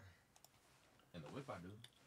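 Near silence with a few faint, sharp clicks and a brief low murmur of a voice past the middle.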